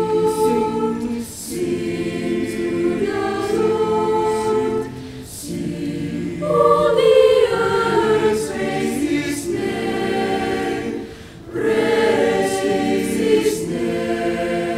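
Mixed-voice school choir singing in full chords, in sustained phrases broken by short breaths about a second in, about five seconds in and about eleven seconds in. The loudest and highest entry comes about six and a half seconds in.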